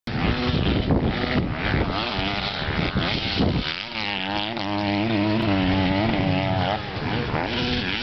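Dirt bike engine running on a motocross track, its pitch rising and falling again and again as the throttle is worked. The note is rough and noisy for the first few seconds and clearer from about halfway.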